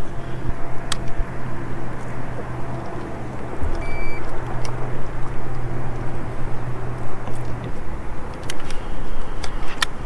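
Wind and water noise on a boat, with the steady low hum of a small electric motor that stops about three-quarters of the way through. A short high beep sounds near the middle.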